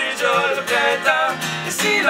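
Live acoustic performance: a man singing with vibrato over two strummed acoustic guitars, one played with a capo.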